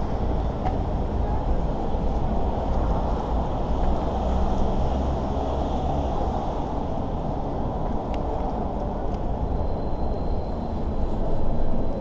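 Steady rumble of road traffic from the freeway overhead and the minibus taxis around, an even noise heaviest in the low end with no distinct events.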